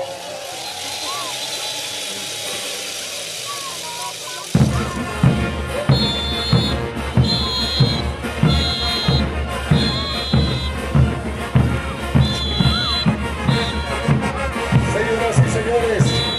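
Crowd noise with a steady hiss for the first few seconds. Then, about four and a half seconds in, a festival dance band's music starts abruptly, with a steady drumbeat and repeated high-pitched held notes.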